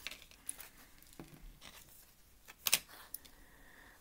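Tarot cards being shuffled and handled, giving a few faint soft clicks and rustles, with one sharper card snap near the three-quarter mark as a card is drawn.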